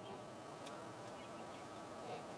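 Faint steady hum over quiet room tone, with one very faint tick.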